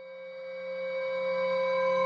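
Singing bowl sounding a sustained tone of several steady pitches together, swelling gradually louder.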